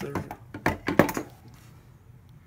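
Several knocks and clunks of a clear plastic tub enclosure's lid being handled and shut, the loudest about a second in.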